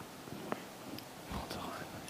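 Quiet pause between speakers: faint hall ambience with low murmuring, a single soft click about half a second in and a soft low bump a little after the middle.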